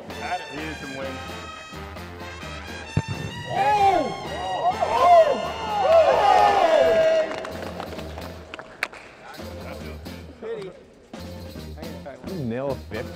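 Background music with a steady bass, a single sharp thud about three seconds in as a football is kicked off a tee, then voices calling out.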